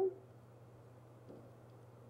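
Near silence: room tone with a low steady hum, after the tail of a woman's word right at the start.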